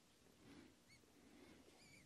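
Near silence: faint room tone, with two faint, brief high chirps, one about a second in and one near the end.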